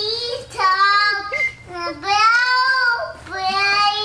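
A toddler's high voice singing out long, held notes, about three drawn-out calls with short breaks between them.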